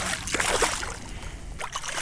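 Water splashing and sloshing as a hooked speckled trout thrashes at the surface close by while being brought to hand, busiest in the first second and easing off near the end.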